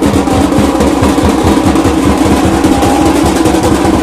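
Loud, fast drumming in a continuous roll of dense strokes, with a steady held tone beneath it.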